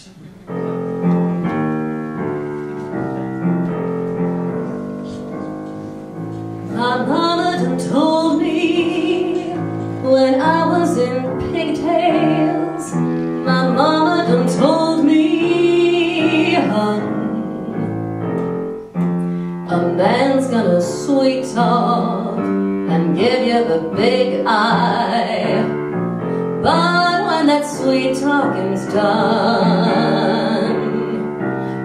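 A solo piano introduction, then a woman's voice comes in about seven seconds in, singing with vibrato to the piano accompaniment.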